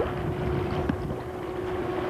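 Wind buffeting a home camcorder's microphone by open water, a rough, even rumble with a steady low hum underneath.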